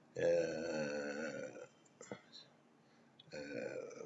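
A man's long, drawn-out hesitation sound, a held 'eeh' lasting about a second and a half, followed by a single short click, a pause, and his speech starting again near the end.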